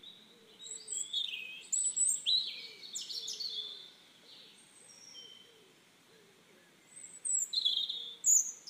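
Small birds chirping and trilling outdoors: bursts of short, high chirps, busiest in the first few seconds and again near the end, with a quieter spell in between.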